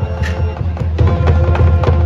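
High school marching band playing live: wind instruments holding chords, with sharp percussion strikes coming in a steady rhythm from about a second in.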